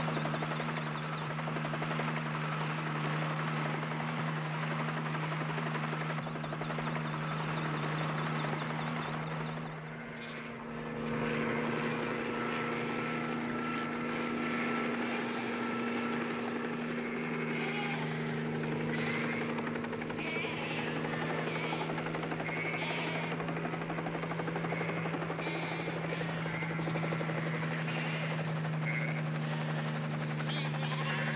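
A light helicopter's engine and rotor running steadily, with a short dip in loudness about ten seconds in. In the second half, sheep bleat now and then.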